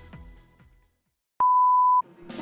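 Background music with a steady beat fades out, then after a brief silence a loud, pure, steady electronic beep tone sounds for about half a second and cuts off abruptly.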